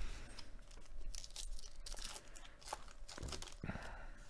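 A sealed 2022 Topps Heritage baseball card pack being torn open by hand, its wrapper crinkling and crackling in irregular bursts.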